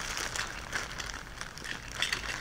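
Plastic bag crinkling as hands rummage through it, with small irregular rustles and clicks.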